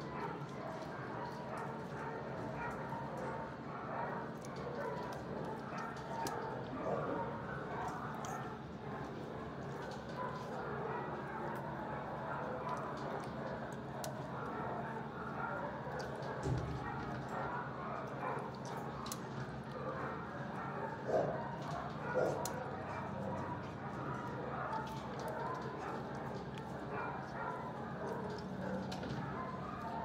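Many dogs barking and yipping across a shelter kennel block, a steady din with a few louder barks standing out about two-thirds of the way through.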